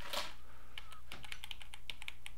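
Typing on a computer keyboard: a quick, uneven run of key clicks over a low steady hum.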